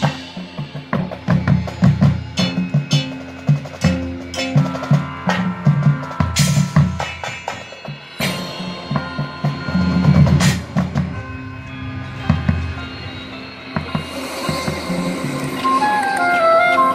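Marching band percussion playing a busy rhythmic passage: low pitched drum notes and snare strokes in quick runs, with two loud crashes about six and ten seconds in.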